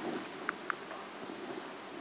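Quiet room tone of a lecture hall through the microphone, a steady faint hiss, with two small clicks about half a second in.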